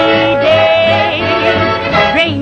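A woman singing a lively song with orchestral accompaniment, holding one long wavering note in the middle.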